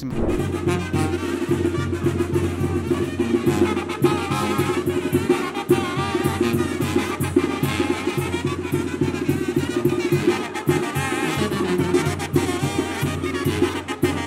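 A Mexican brass band (banda) playing, trumpets and tuba over drums, with a steady beat.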